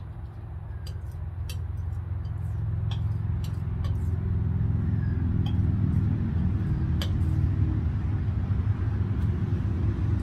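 A motor engine running steadily nearby, growing louder over the first few seconds and then holding, with a few scattered light clicks over it.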